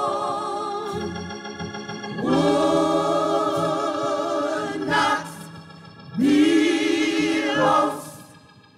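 Gospel choir singing long held, wavering chords over a steady organ note. The voices fall away and come back in twice, the later entry the loudest, and stop just before the end.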